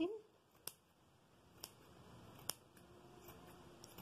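Scissors snipping yarn while trimming a pompom: three short, faint cuts about a second apart.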